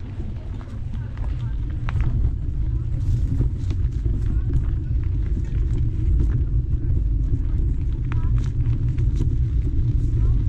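Low wind rumble on the microphone, with scattered crunching footsteps on a dirt and leaf-litter trail. The rumble gets louder about two seconds in.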